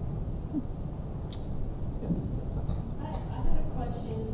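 A faint, muffled voice speaking off-microphone over a steady low rumble of room noise, growing a little clearer near the end.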